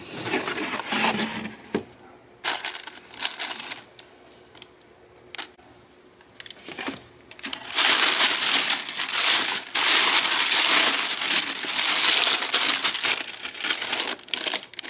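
Shoe box being opened: scattered rustles and light knocks of the cardboard box and lid, then tissue paper wrapping crinkling and rustling loudly and continuously as it is pulled apart, from about halfway through.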